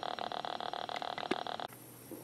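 Small speaker driven by a DFPlayer Mini MP3 module buzzing with rapid regular ticks, about ten a second, between plays of its test clip: interference noise from the module that a 2200 µF electrolytic capacitor across the supply has not cured. It cuts off abruptly near the end.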